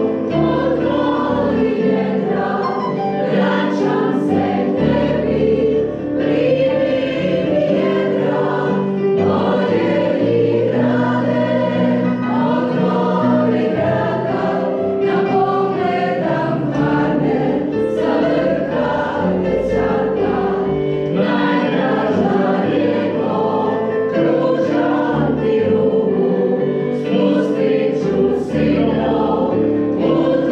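Choral music: many voices singing held notes together, continuing without a break.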